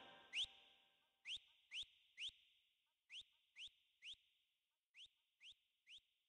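Short, rising, whistle-like electronic chirps come in groups of three, about half a second apart. Each group is fainter than the last, as the remix's outro echo dies away.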